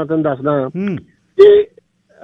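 Speech: a man talking over a telephone line, then about one and a half seconds in a single short, loud vocal sound.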